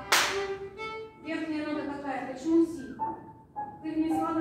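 Children's violin ensemble playing sustained notes, cut across right at the start by one loud sharp crack. The playing thins out and nearly stops about three seconds in, then picks up again near the end.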